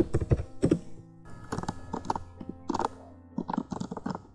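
Typing on a computer keyboard: a quick, uneven run of keystrokes. Soft background music with held notes plays under it.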